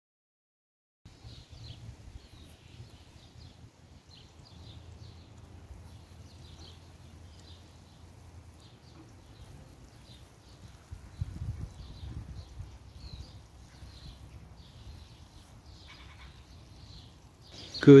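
Outdoor background of small birds chirping in short, repeated high calls over a steady low rumble, which swells louder briefly about eleven seconds in.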